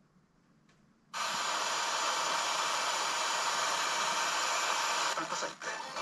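FM radio static played through the phone's speaker by an RTL-SDR receiver app. A few faint touchscreen taps come first; about a second in, a loud, steady hiss cuts in suddenly as wide-band FM demodulation is switched on. Near the end the hiss wavers as the 98 MHz broadcast station begins to come through.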